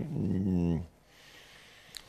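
A man's drawn-out hesitation sound, a held "ehh" lasting just under a second with slowly falling pitch, then quiet room tone with a small click near the end.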